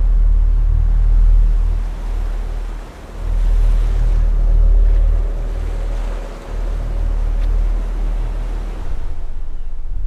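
A deep rumble that swells and eases in long surges, over the rushing wash of choppy lake water. A faint held tone surfaces about halfway through.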